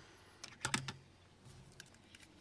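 A few short, faint clicks in quick succession, about half a second in, with a couple of fainter ones later.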